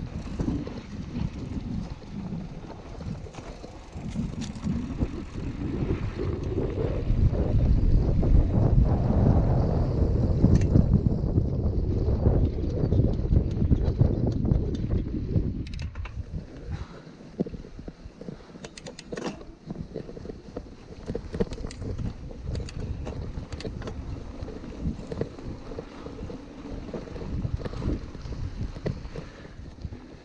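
Wind rushing over the camera microphone and a 2013 Kona mountain bike's tyres rolling over a sandy dirt track. The noise swells for several seconds in the middle, then drops, with a few clicks and rattles from the bike over bumps in the second half.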